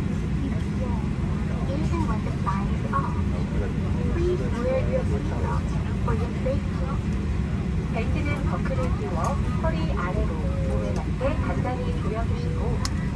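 Steady low rumble inside a jet airliner's cabin while it sits on the ground, with faint scattered voices of people talking over it.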